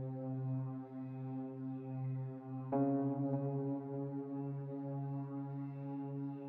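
Steady low hum with many overtones in the cab of a moving electric locomotive. There is a click about three seconds in, after which the hum is slightly louder.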